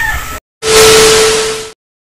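Edited-in transition sound effect: a loud burst of static-like hiss with a steady hum tone under it, lasting about a second, then cutting to dead silence.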